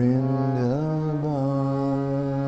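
A man singing one long held note of a devotional kirtan chant over a Bina harmonium's reeds. His pitch swings up a little under a second in, then holds steady over the harmonium's sustained chord.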